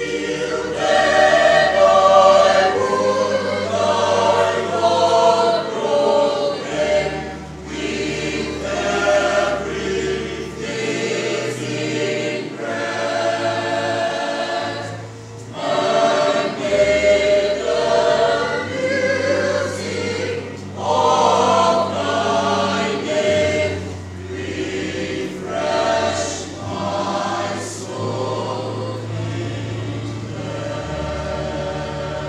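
A mixed choir of young voices singing a gospel hymn in parts, in phrases of a few seconds each, over sustained low bass notes that change every few seconds.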